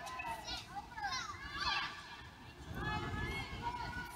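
Several high-pitched voices calling and shouting across a large indoor soccer hall, with rising and falling pitch, over the hall's low background rumble.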